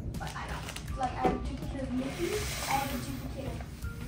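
A person sucking the air out of a zip-top plastic sandwich bag through a gap in its seal: a hissing draw of air, about a second long, starting around two seconds in.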